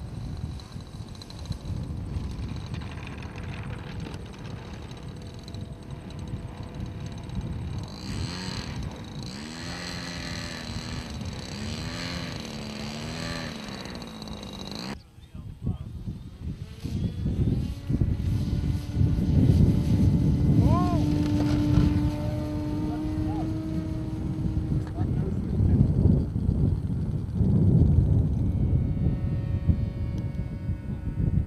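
Engines of O.S.-powered radio-control model aircraft running as the planes fly past, with wind noise on the microphone. The sound drops out suddenly about halfway through, and the second half is louder.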